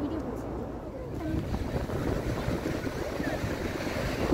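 Wind buffeting the phone's microphone at the water's edge, a low, uneven rumble over the wash of breaking surf, with faint voices in the background.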